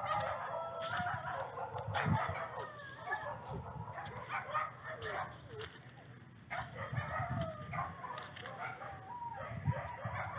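Chickens calling in the background: many short clucks and crowing calls one after another, over a thin steady high tone that stops near the end.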